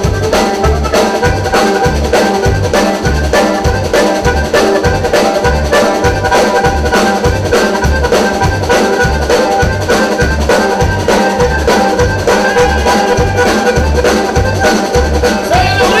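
Live Tejano band playing: a button accordion carries the melody over electric bass, congas and drum kit, with a steady, evenly spaced bass beat.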